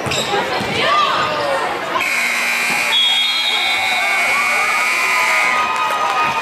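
Gymnasium scoreboard horn sounding one steady blast of about three and a half seconds, starting about two seconds in, as the game clock runs out at the end of the second period. Before it, the crowd chatters, sneakers squeak and a basketball is dribbled on the hardwood floor.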